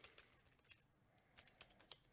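Near silence, with a handful of faint, scattered computer-keyboard clicks.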